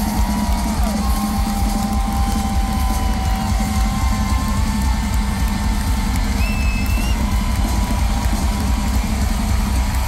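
Loud live rock music heard from within a concert crowd, with a heavy bass and drum pulse under held sung or guitar notes. Crowd cheering and a few short whistles sit on top.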